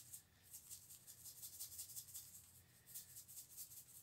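A seasoning-salt shaker being shaken, the grains rattling faintly in quick repeated shakes.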